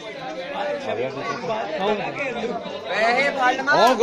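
Several men's voices chattering over one another, growing louder about three seconds in and ending with a loud rising shout of "oh".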